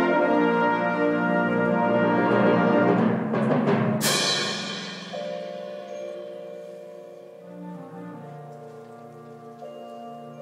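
Symphonic wind band playing loud sustained brass and woodwind chords. A percussion roll swells into a sharp crash about four seconds in. The crash rings away as the band drops to softer held chords.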